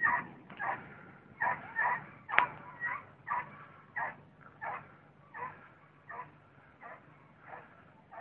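An animal calling over and over in short pitched calls, about one and a half a second, growing fainter toward the end. A single sharp crack sounds about two and a half seconds in.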